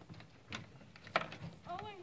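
Metal latch on a wooden hutch door being fastened: a couple of sharp clicks, the loudest a little past a second in.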